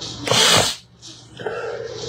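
A man sneezes once, a loud, short burst about a quarter of a second in, over a steady low room hum.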